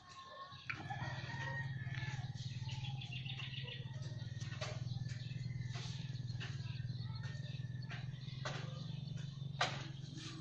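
Birds calling, over a steady low hum that starts about a second in, with a few scattered sharp clicks.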